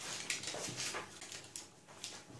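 Faint, soft rubbing and scuffing of hands rolling and twisting a rope of soft yeast dough on a silicone baking mat.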